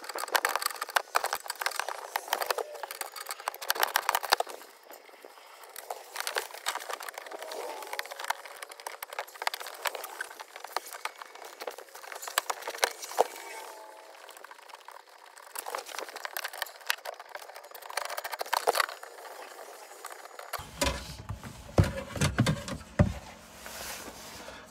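Sped-up sound of a ratchet and socket working the gateway module's 10 mm bolts and its plug-in harnesses: a fast, raised-pitch run of clicks, rattles and small metallic clatter. Near the end the sound drops back to its normal pitch.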